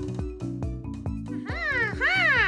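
Light background music with a regular beat. About one and a half seconds in, a cartoon bush baby character starts an animal-like call that rises and then falls in pitch.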